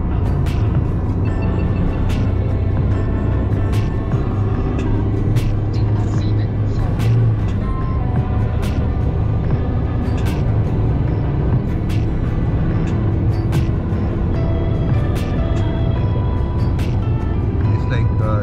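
Background music with a beat and a changing melody, played over the steady low rumble of road noise inside a car driving on the motorway.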